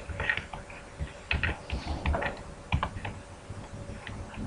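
Typing on a computer keyboard: an irregular run of keystrokes, with a few sharper, louder key presses.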